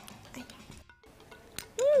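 Soft background music, then near the end a woman's drawn-out appreciative "mm" as she tastes the soup, its pitch rising and then falling.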